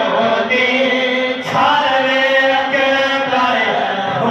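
Men's voices chanting a devotional naat into handheld microphones, in long held notes, with a new phrase starting about a second and a half in.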